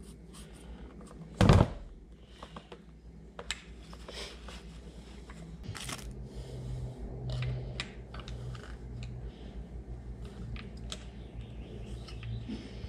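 Hand-tool and parts handling: light clicks and rag rustling, with one loud thump about a second and a half in as the used oil filter is dropped into the plastic oil drain pan.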